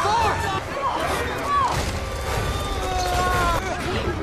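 Movie soundtrack of a fight scene: short shouts and cries from young male voices over background music and a steady low rumble, with one longer held cry or note in the second half.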